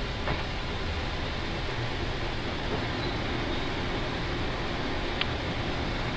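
Steady, even rush of airflow and air-conditioning noise on the flight deck of an Airbus A340-300 on final approach with the landing gear down and flaps at 3. A faint click about five seconds in.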